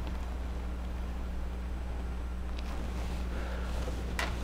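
Steady low electrical hum with a faint hiss underneath, and one faint tick near the middle.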